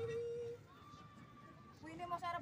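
Faint, distant voices calling out on the field: one long held call that breaks off about half a second in, then a quieter stretch before more voices start near the end.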